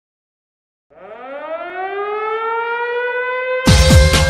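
Silence, then about a second in a siren-like tone rises in pitch, grows louder and levels off. Just before the end, electronic music with a heavy beat kicks in under it, opening a show's intro.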